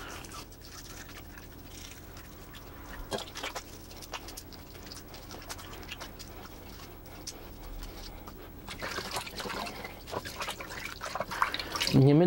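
Hands rubbing a bar of soap and washing in a pot of water: small splashes and drips, scattered through and busier in the last few seconds.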